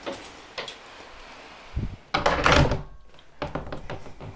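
An interior door being shut: a low thump just before the halfway point, then the loudest sound, the door swinging into its frame and latching, lasting under a second, with a few light clicks and knocks before and after.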